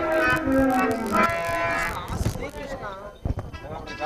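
The last line of a sung stage song with instrumental accompaniment, a held note ending about a second in. It is followed by quieter voices and a few knocks as the recording trails off.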